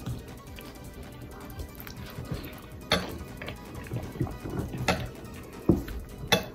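Forks clicking and scraping against bowls of macaroni a few times, the sharpest clicks about halfway through and again near the end, over quiet background music.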